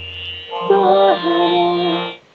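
A woman singing a slow Indian classical vocal line of long held notes that step down in pitch. The voice enters about two-thirds of a second in over a steady drone.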